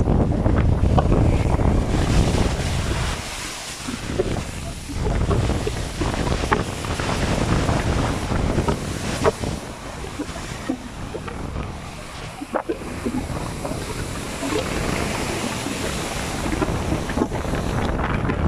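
Strong wind buffeting the phone's microphone over rough surf churning and breaking around the wooden pier's pilings. The wind rumble is heaviest in the first few seconds, then eases.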